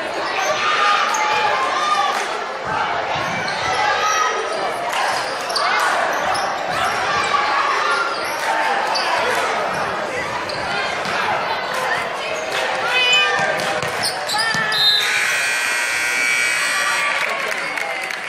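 Gym crowd talking and calling out over basketballs bouncing on a hardwood court, with many short knocks and thuds. About fifteen seconds in, the scoreboard horn sounds for about two seconds as the game clock runs out.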